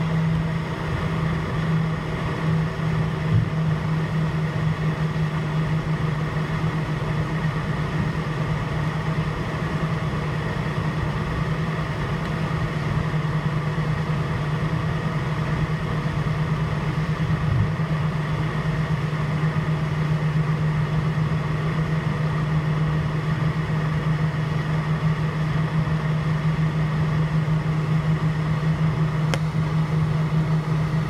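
Airbus A321 jet engines at low taxi thrust heard inside the cabin: a steady drone with a strong low hum and no spool-up.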